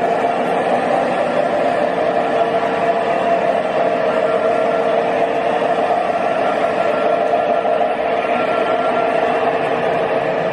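O gauge three-rail model freight train rolling past: the metal wheels of its double-stack container cars running on the rails in a steady rumble.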